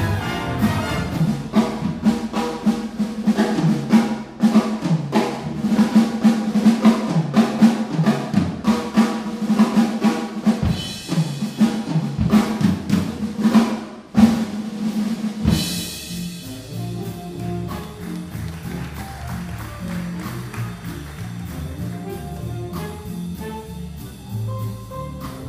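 Live big band playing a jazz blues, the drum kit busy and prominent over a held low note. About fifteen seconds in, a cymbal crash, and the band drops to a softer passage with a moving low line underneath.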